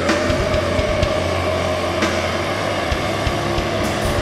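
Hardcore metal band playing live, loud: one long held note sustained for about four seconds over a steady low drone, breaking off near the end.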